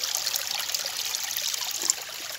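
Water trickling and pouring out of a tilted aluminium cooking pot as the washing water is drained past its glass lid.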